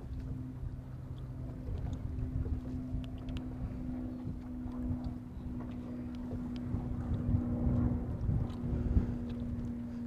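Steady low hum of an electric trolling motor pushing the boat at trolling speed, under an uneven low rumble of wind buffeting the microphone.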